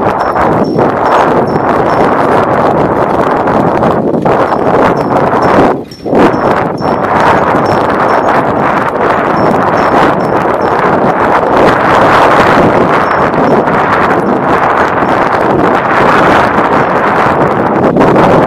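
Loud, continuous wind and road noise while moving along a road, dipping briefly about six seconds in.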